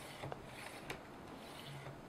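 The blue plastic corona-wire cleaning slider on a Brother laser printer drum unit being slid back and forth along the corona wire to clean it: faint plastic rubbing with a few light clicks.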